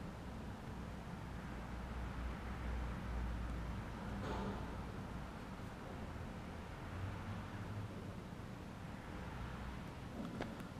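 Quiet, steady low background rumble, with a faint brief rustle about four seconds in.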